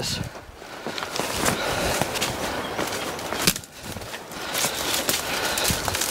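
Footsteps crunching through dry leaf litter and twigs, with branches brushing past: an irregular run of crackles and crunches that eases off briefly partway through.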